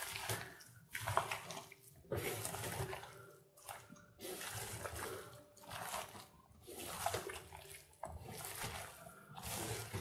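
Hand squeezing and kneading meat chunks with sliced onion and spices in an enamel bowl: wet squelching in short bursts about once a second, as the onion is crushed to release its juice into the marinade.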